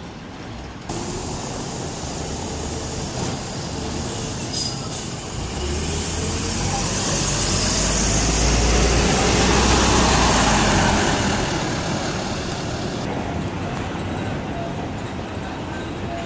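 A city bus passing close by: its diesel engine rumble swells to a peak about ten seconds in and then fades, over steady street traffic.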